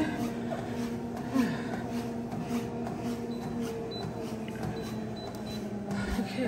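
TRUE treadmill's motor and belt running with a steady hum that shifts lower as the belt is slowed from 3.0 to 2.5 mph, with footfalls on the moving belt.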